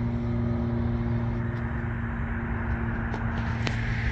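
A steady engine hum with a constant low pitch, over outdoor background noise, with a small click late on.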